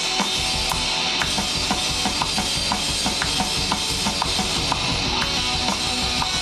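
Drum kit played in a steady rock beat: kick drum thumps and sharp hits about twice a second over a continuous cymbal wash.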